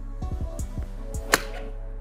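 One sharp crack of a pitching wedge striking a golf ball off a hitting mat, a little past the middle, over background music with a steady beat.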